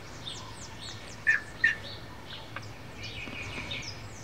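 Birds chirping: a run of short, high, downward chirps, with two louder calls a little over a second in.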